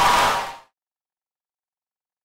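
Crowd cheering for the winner's announcement, cut off abruptly about half a second in and followed by dead silence.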